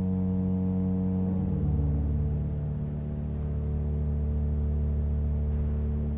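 Pipe organ holding sustained low chords over a deep pedal bass. The chord changes about a second and a half in, moving to a lower, heavier bass, which is then held steadily.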